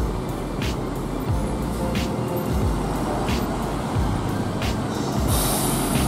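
Scania coach's diesel engine running at low speed as the bus pulls slowly through the terminal, a steady low rumble under background music.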